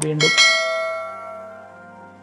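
A sharp click, then a single bright bell chime that rings out about half a second in and fades away over the next second and a half. This is a notification-bell sound effect for a subscribe-button animation.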